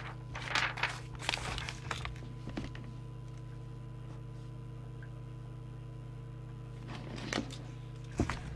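Paper handled and written on with a pen: rustling and scratching for the first few seconds and again briefly near the end, over a steady low electrical hum.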